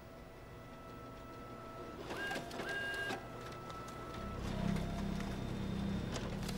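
Photocopier starting up and running: a rising mechanical whir with two short beeps about two seconds in, then a louder steady low hum with clicking from about four seconds in.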